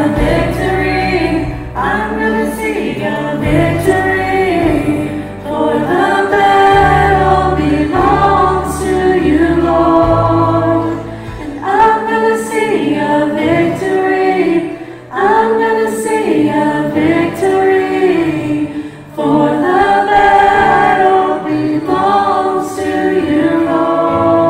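Church worship team singing a gospel song together, several voices in harmony, over a live band with a bass line that changes every couple of seconds.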